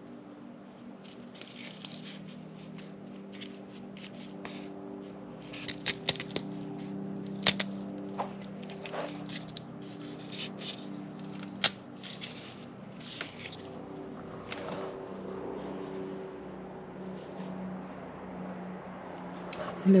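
Paper cover being peeled and handled on a cardboard honeycomb insect carrier: intermittent crinkling, scraping and sharp little clicks, with a few louder snaps spread through. A steady low hum runs underneath.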